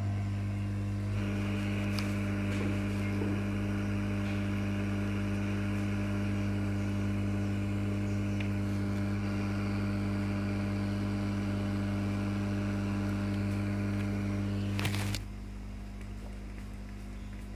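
Hot air rework gun blowing on an engine control unit's circuit board to desolder its MOSFETs: a steady motor hum with air hiss. It cuts off with a click about a second before the end, leaving a quieter hum.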